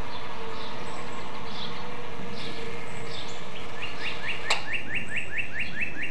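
Songbirds chirping, with a quick run of about ten repeated notes in the second half. A single sharp click about halfway through.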